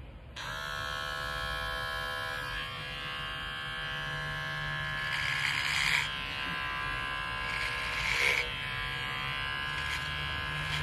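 Electric hair clipper switched on about half a second in, then buzzing steadily as it is run through the hair at the side of the head. The buzz gets louder and harsher for a moment around the middle and again just before the end, as the blades cut, with brief dips in pitch.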